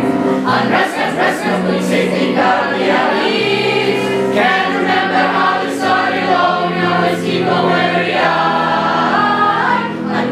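A stage-musical cast of mixed young voices singing together in chorus, held sustained notes, accompanied by piano played on an electric keyboard.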